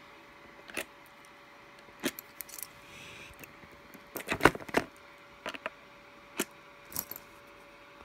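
Metal key rings jangling and clicking as guitar-jack plugs on key fobs are pulled one after another out of their panel sockets. The sounds come in about seven separate bursts, the loudest cluster a little past halfway. A faint steady tone sits underneath.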